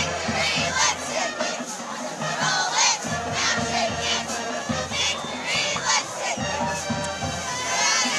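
Cheerleading squad shouting a cheer together, many young female voices yelling over crowd noise.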